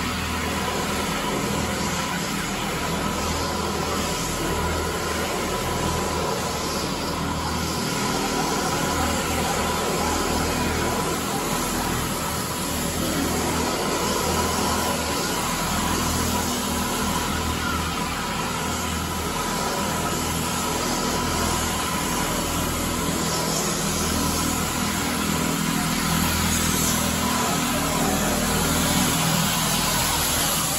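Advance SC750 walk-behind floor scrubber running while scrubbing, its motors giving a steady whine over a low hum.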